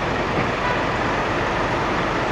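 Steady city street traffic noise, an even rumble and hiss of vehicles with no single distinct event standing out.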